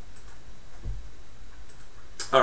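Faint computer mouse clicks over a low steady hum, with a soft low thump just under a second in.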